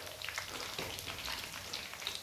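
Besan sev frying in hot oil in a kadhai: a faint, steady crackling sizzle.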